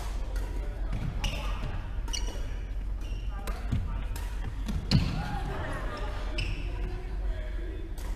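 Badminton rackets striking a shuttlecock in a rally: sharp clicks about once a second, the loudest about five seconds in, with footfalls on the wooden court floor.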